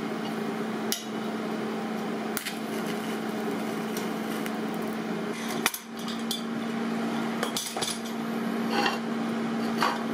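Steel parts clanking and knocking against each other about half a dozen times, at uneven intervals, as a metal workpiece and its jig are handled on a steel bench, over a steady electrical hum.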